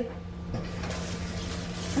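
Cooking-spray oil sizzling in a hot, empty frying pan, a steady soft hiss; the bubbling oil is the sign that the pan is hot enough for the eggs to go in.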